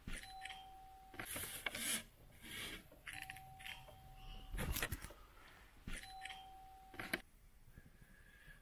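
Doorbell rung three times, each ring a single steady tone lasting about a second, with no one answering. Between the rings there is handling rustle and one sharp thump a little past halfway.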